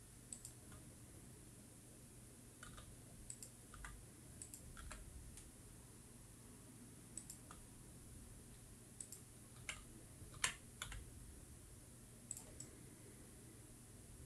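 Faint, scattered clicks of a computer keyboard and mouse, some single and some in quick pairs, with the loudest click about ten seconds in, over near silence.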